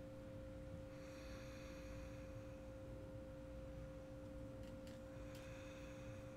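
A faint, steady drone of two held low notes, one about an octave above the other, unchanging throughout.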